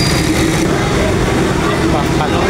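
Busy fish market din: several voices mixed with a steady engine hum.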